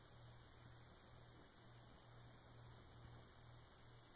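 Near silence: a low, steady hum with faint hiss.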